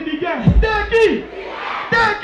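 A man's loud shout over the sound system above a festival crowd, in a break in the music: the shout falls in pitch about half a second in, with a deep bass hit under it.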